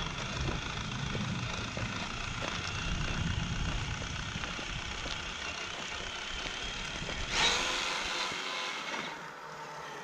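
An RC scale Ford Bronco with a brushless motor, on a low power setting, drives over dirt and gravel: a steady electric motor whine over the crunch of its tyres. About seven seconds in there is a sudden louder scrape as it stops abruptly, and after that it is quieter.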